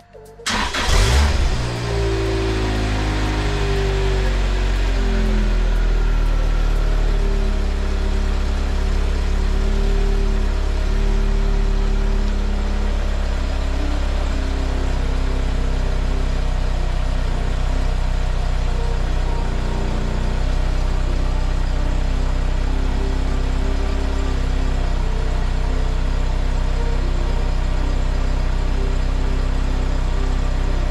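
Lotus Exige S2's 2ZZ four-cylinder engine starting about half a second in and then idling, its pitch shifting over the first several seconds before settling steady, as it runs after the sump has been refitted.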